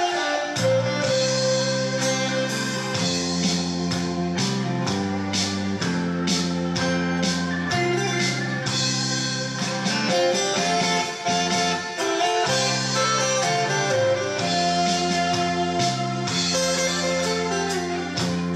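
Backing band music with a steady beat, an instrumental passage of a song with no singing over it.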